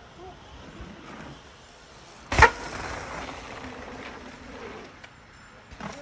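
A mountain bike hitting the rocky ground: one sharp, loud clattering impact about two and a half seconds in, followed by quieter scuffing.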